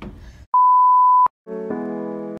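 A single loud, steady, high-pitched electronic beep lasting under a second that cuts off sharply, the kind of tone added in editing. About a second and a half in, background music with sustained chords begins.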